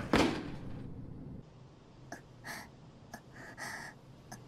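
A girl's breathy gasp at the start, fading over about a second, followed by several short, faint breaths: the flustered, breathless sounds of an anime girl who has been made hypersensitive.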